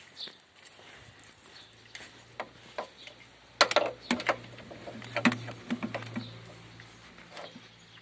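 Handling noises from a portable car jump starter being carried and set down in an engine bay: a scatter of sharp plastic and metal clicks and knocks, loudest in a cluster about three and a half to five seconds in, over a faint low hum.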